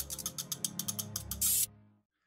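Logo-animation sound effect: a fast run of ratchet-like clicks over a low bass tone, ending in a short hiss about a second and a half in, then fading out.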